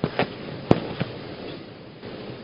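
Four short, sharp clicks within about a second, the third the loudest, over a faint steady hiss.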